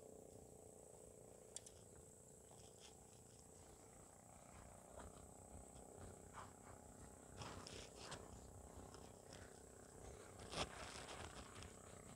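Near silence: faint outdoor background with a few soft clicks and rustles, the most noticeable about ten and a half seconds in.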